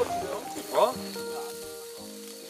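Pork sizzling on a charcoal barbecue grill, with background music over it and a short spoken "eh?" about a second in.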